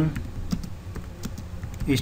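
Computer keyboard keys being pressed to type a search query: a run of separate keystroke clicks at an uneven pace.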